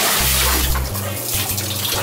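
Water pouring and splashing into a filled bathtub as a marching baritone is spun to empty the water out of its tubing, louder in the first second.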